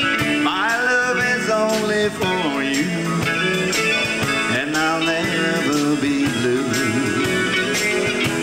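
A live band playing a country rock-and-roll song on electric guitars and drums, with a bending melodic lead line running over the backing.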